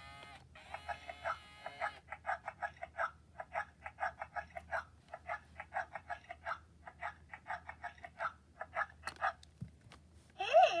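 Baby Alive Grows Up talking doll's electronic voice: a short sung tone for about the first two seconds, then a long run of quick, short chirping sounds, about three a second.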